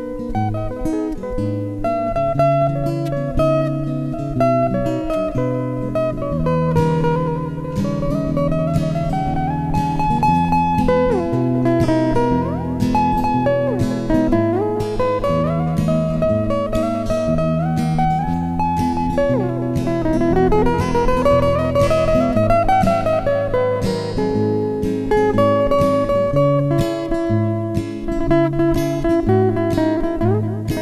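Acoustic guitar playing an instrumental passage over sustained chords and bass notes, with long sliding notes that rise and then fall, twice.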